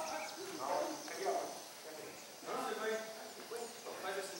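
People talking, with faint, short, high bird chirps over the voices.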